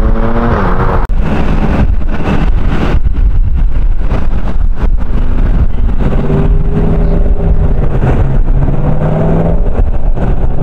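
Road traffic: a car engine accelerating, rising in pitch right at the start, then a dense low rumble with another vehicle's engine running steadily through the second half.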